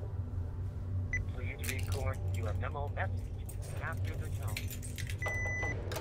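Answering machine playing: a voice from its speaker, then one short steady beep near the end, just before a caller's message starts. Under it there is a low steady hum, with scattered clicks like keys or a door handle.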